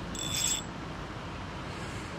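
Shimano Soare spinning reel worked by hand, giving a brief high-pitched whir of about half a second near the start, over steady outdoor background noise.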